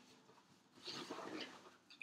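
Faint rustling and handling noise, starting about a second in and lasting under a second, as a mailed package is picked up; otherwise a quiet room.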